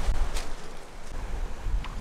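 Wind buffeting the microphone over the steady rush of Lake Huron waves breaking on the shore, with a single sharp click about half a second in.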